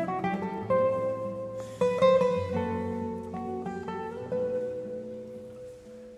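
Two classical guitars play a slow tango passage, plucked notes with a loud strummed chord about two seconds in, then a held note that fades away toward the end.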